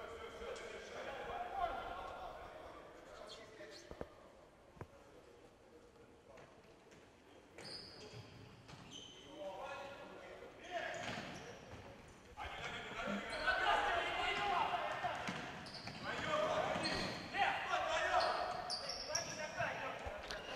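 Ball kicks and bounces on a wooden court, with players' shouts, echoing in a large sports hall. The sound drops to near silence for a few seconds midway.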